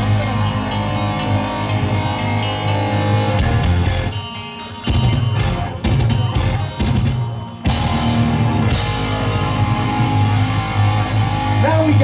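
Live heavy metal band playing: distorted electric guitars, bass and drum kit. In the middle the playing turns stop-start, with short breaks between hits, before full riffing resumes about eight seconds in.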